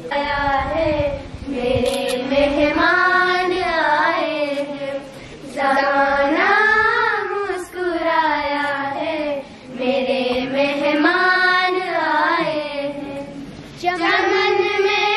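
A child's voice singing a slow devotional chant in long, wavering phrases. Short breaks for breath come about five, seven and a half, and nine and a half seconds in.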